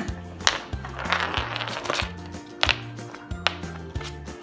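Golden retriever puppy chewing an ice cube: a sharp crack about half a second in, a burst of crunching between one and two seconds, and two more cracks later, over upbeat background music.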